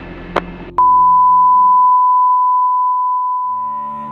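Two sharp clicks, then a single steady electronic beep on one pure pitch held for about three seconds, fading out near the end. Low music underneath dies away, and bowed low-string music comes in as the tone fades.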